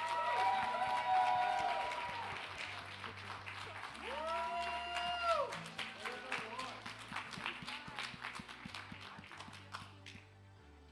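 Congregation clapping and cheering, with drawn-out whoops at the start and again about four seconds in; the applause tapers off toward the end.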